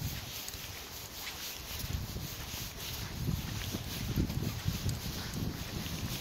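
Footsteps of a person walking on a dirt forest trail, a regular low thud about twice a second that grows more distinct after the first couple of seconds, over a steady hiss.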